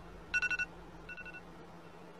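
Phone alarm beeping in short rapid bursts: one about a third of a second in, then a fainter one at about a second, after which it stops.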